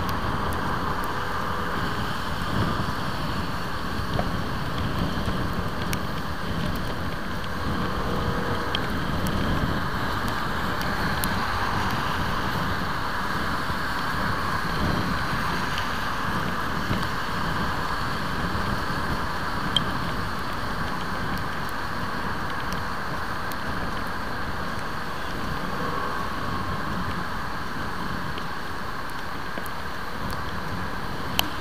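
Steady wind rush on the camera's microphone from a motorcycle cruising at road speed, mixed with the bike's engine and tyre noise on a wet road. A faint click comes about two-thirds of the way through.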